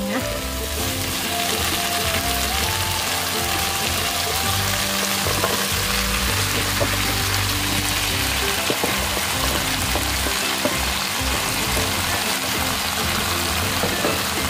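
Shrimp and chili paste sizzling in hot oil in a wok, a steady frying hiss, as sliced bitter melon is added to the pan. Quiet background music plays underneath.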